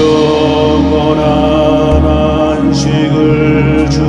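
Korean Catholic yeondo, a chanted prayer for the dead, sung in a slow steady chant over sustained accompaniment from a gugak-and-keyboard ensemble.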